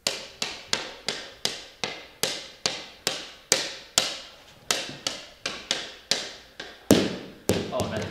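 A small ball bounced repeatedly off the blade of a hockey stick, about three sharp taps a second, each with a short echo. One louder knock comes about seven seconds in.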